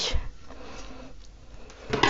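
Faint handling sounds as hands work moss into a glass vase: a short soft rustle at the start and a low bump near the end.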